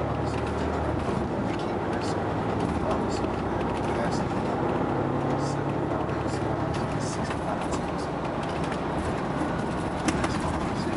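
Inside the passenger cabin of a moving 2011 Prevost X345 coach: its Volvo D13 inline-six diesel engine drones steadily under road and tyre noise, with scattered light clicks and rattles.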